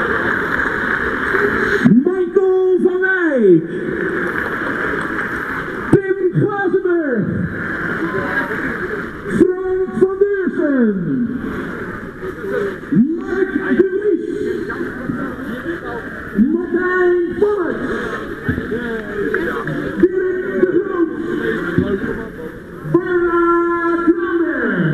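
Stadium crowd noise with a drawn-out voice over the public-address system, calling out about every three to four seconds. Each call rises, holds and falls away in pitch, in the manner of an announcer introducing names one by one.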